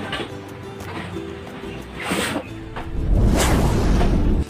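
Background music, over the handling of a cardboard box being opened and a carrying case pulled out of it: a brief rush of noise about two seconds in and a louder, deeper one from about three seconds on.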